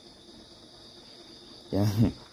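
Steady, high-pitched insect chorus, a continuous chirring with no breaks.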